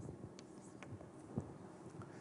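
Faint sounds of writing: a few soft, brief taps and scratches of a pen or chalk during a pause in the talk.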